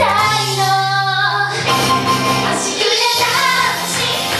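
Young girls singing a pop idol song live into handheld microphones over backing music.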